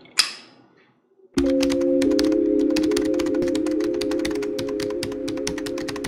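A single spritz from a perfume spray bottle just after the start, a short hiss that dies away quickly. From about a second and a half in, intro music plays: a held low chord under fast, even clicking like typing.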